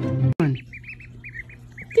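Music stops abruptly about a third of a second in, followed by a brief falling swoop. After that, a duckling peeps in quick runs of short, high calls.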